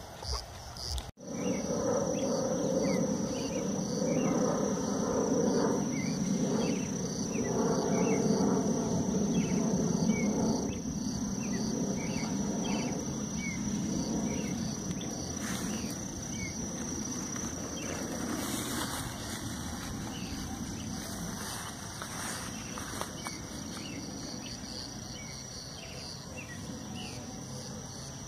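Field insects, crickets or cicadas, keeping up a steady high trill with repeated chirping. Under them is a louder low rushing noise, strongest in the first half, that slowly fades toward the end.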